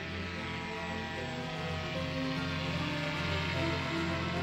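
Background music with sustained, held chords.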